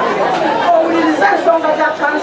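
A woman speaking through a microphone to a gathered crowd, with crowd chatter behind her.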